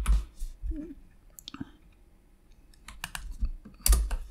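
Computer keyboard keystrokes: scattered single key presses with pauses between them, a few quick ones about three seconds in, and a louder one at the end.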